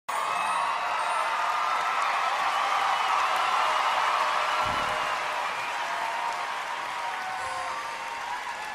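Theatre audience applauding and cheering, with faint music underneath, the applause slowly dying down.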